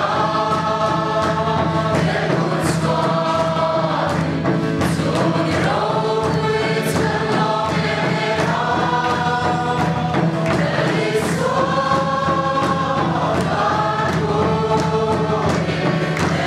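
A large congregation singing a hymn together, many voices holding long notes that glide between pitches, over a faint regular beat.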